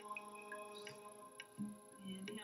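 Soft background music of held, sustained tones with a light tick about twice a second.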